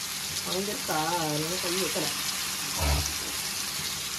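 Fish pieces shallow-frying in oil on flat tawas, a steady sizzle throughout. A brief voice sounds from about half a second to two seconds in, and there is a low thud near three seconds.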